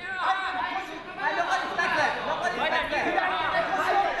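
Several people's voices calling out and talking over one another in a large hall.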